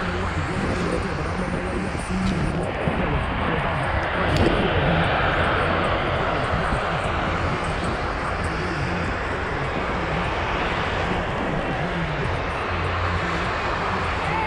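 Snowboard sliding and scraping over packed snow, with wind rushing over the camera microphone as the rider sets off downhill. The rush grows louder about two seconds in and is strongest around four to seven seconds.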